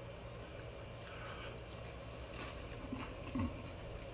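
Faint chewing of a mouthful of hot roast potato dipped in gravy: soft wet mouth sounds and small clicks.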